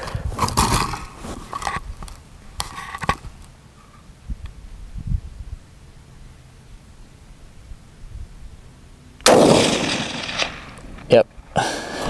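A single rifle shot from a Howa Super Lite .308 bolt-action rifle about nine seconds in: a sudden loud report that echoes off for about a second. A brief click follows near the end.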